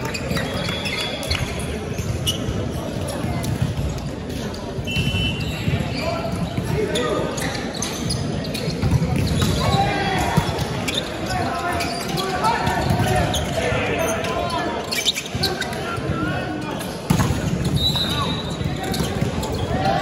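Indoor volleyball rally: repeated sharp hits of the ball, with players' shouts and voices echoing in a large sports hall. A louder, sudden hit comes near the end.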